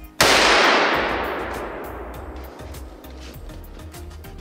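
A single shot from a scoped hunting pistol, fired just after the start. Its report rings out and dies away through the woods over about two seconds, over background music with a steady beat.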